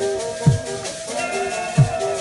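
Dance music with a deep drum struck about every 1.3 seconds, each stroke dropping quickly in pitch, under held pitched notes and a steady shaken rattle.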